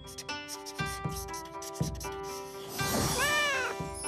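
Light cartoon background music, with a scratchy crayon-drawing effect. About three seconds in, a cartoon cat meows once, rising then falling in pitch.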